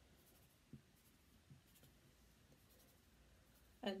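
Near silence, with faint rustling of fingertips patting and moving through short waxed hair; two small brushing sounds come within the first two seconds.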